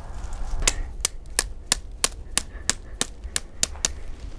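Sharp, evenly paced clicks, about three a second, from a birch-twig broom being bound tight with wire and pliers.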